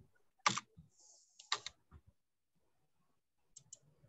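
A few isolated computer clicks, keyboard or mouse: two sharp clicks about half a second and a second and a half in, then two faint quick ticks near the end, with dead silence between them as the call audio gates out.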